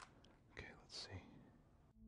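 Near silence, with a soft click at the start and faint, low-level speech a little after halfway.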